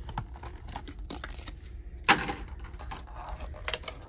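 Clear plastic blister tray of a trading-card box being handled and lifted out: a string of light plastic clicks and ticks, with a louder knock about two seconds in.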